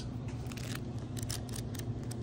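A stack of $100 bills riffled under the thumb: the notes flick past one after another in a quick, irregular run of soft paper ticks.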